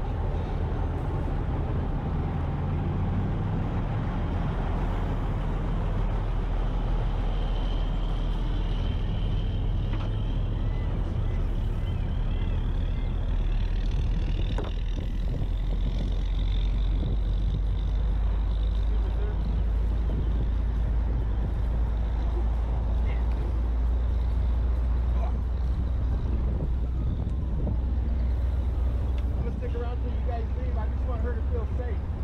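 Steady low rumble of an idling car engine.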